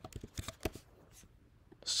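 A quick run of faint, light clicks from a computer mouse, about six in the first part, as text is selected on screen.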